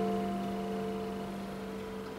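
Small-bodied acoustic guitar with a slotted headstock letting a chord ring out, its notes fading slowly with no new strokes.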